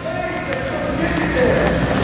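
Footsteps and shoe shuffles on a wrestling mat as two men close in to grip, with low voices in the background.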